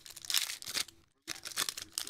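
Foil wrapper of a Panini Prizm basketball card pack crinkling and tearing as it is torn open by hand. The sound comes in two bursts, with a brief pause about a second in.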